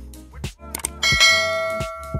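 Two quick clicks followed by a bright bell ding about a second in that rings on and slowly fades, the sound effect of a subscribe-and-notification-bell animation, over background music with a steady beat.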